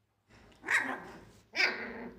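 21-day-old husky puppies barking at play: two short yaps, about a second apart, the second near the end.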